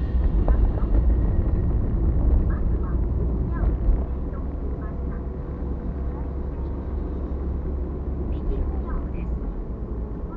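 Car driving, heard from inside the cabin: a steady low rumble of engine and tyres on the road, louder for the first few seconds and then easing off.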